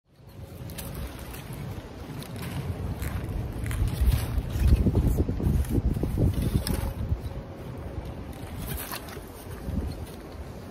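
Wind buffeting the microphone, a low rumble that gusts strongest around the middle. Short rustles of flag cloth being handled run through it.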